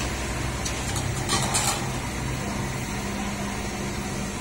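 Steady low engine-like hum, with a short clatter about a second and a half in.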